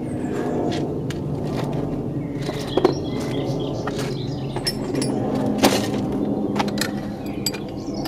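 Metal hand tools clinking and knocking as they are handled, a few sharp clinks with the clearest about three seconds and five and a half seconds in, over a steady low hum.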